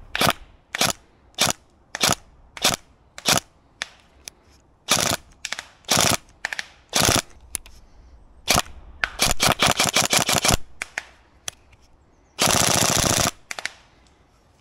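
Tokyo Marui MP5SD NGRS airsoft electric gun firing: a run of single shots a little over half a second apart, then shots more widely spaced. Around nine seconds in come quick strings of shots, and about twelve seconds in one steady full-auto burst of about a second, the loudest sound here.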